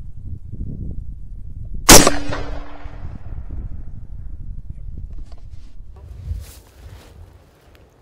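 A single .450 Bushmaster rifle shot about two seconds in, very loud and sharp, with its echo trailing off over the next second or so. A low rumble runs under the quiet before the shot.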